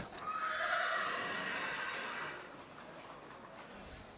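A horse whinnying once, a call of about two seconds that fades away.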